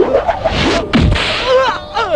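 Film fight sound effects: a swishing blow and a hard punch impact about a second in, with a man's cries of pain around it.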